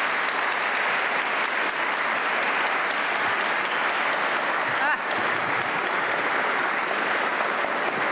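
Steady applause from a roomful of people clapping together, holding at an even level throughout.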